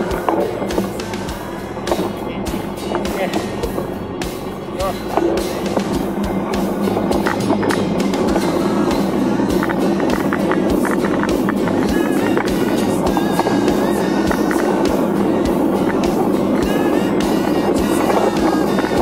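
Mountain bike rolling fast over a bumpy dirt trail: tyre rumble and the bike rattling with many small knocks, getting louder and steadier about six seconds in.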